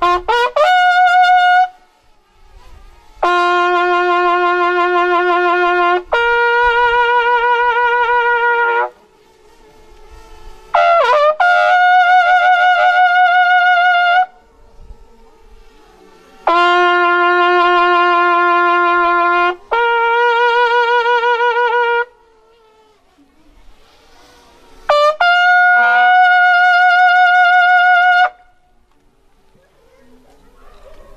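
A solo bugle sounding a slow ceremonial call: long held notes with a slight waver, stepping from a low note to a higher one, some led in by a few quick short notes, with silent gaps of two or three seconds between the phrases. It is played as a solemn honour for a dead officer.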